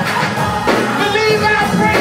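Live gospel praise music: a drum kit playing along with held instrumental notes, and voices singing.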